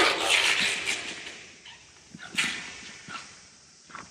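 Dry branches of a dead tree rustling and crackling as the whole tree is dragged and shifted over a sheet-covered floor. There is a loud rustle at the start, another sharp one about two and a half seconds in, and scattered twig clicks and knocks in between.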